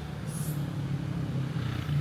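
Street traffic: a vehicle engine running with a steady low hum, and a brief hiss about half a second in.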